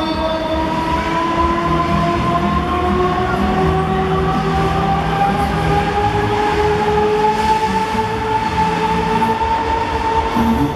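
Break Dancer fairground ride running at speed: its drive gives a steady motor whine whose pitch climbs slowly as the ride speeds up, then levels off near the end, over a low rumble from the spinning platform.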